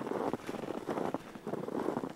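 Footsteps crunching through snow at a walking pace.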